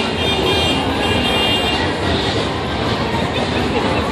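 Steady city street noise, mostly traffic, with a brief high whine in the first two seconds.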